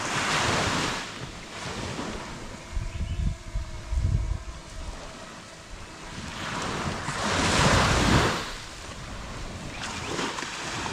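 Small waves washing up on a sandy beach, surging once at the start and again, longer, about seven seconds in, with gusts of wind buffeting the microphone in between.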